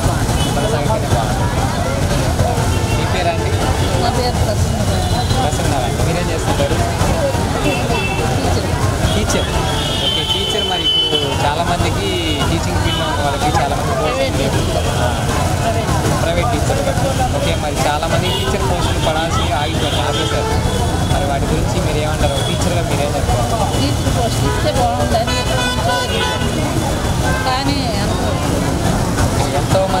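A woman talking into a microphone, with steady street traffic rumbling behind.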